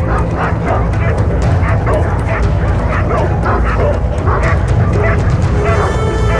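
Stray dogs barking and yipping in rapid short calls, a few tenths of a second apart, as they feed on a carcass, over a steady low rumble.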